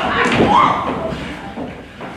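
A heavy thud on the stage floor about half a second in, as actors scuffle and one lies on the floor, with actors' voices crying out around it.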